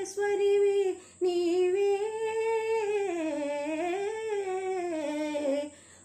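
A woman singing a Telugu padyam solo, with no accompaniment: a short held note, a brief breath about a second in, then one long ornamented phrase that slowly rises and falls in pitch before a pause near the end.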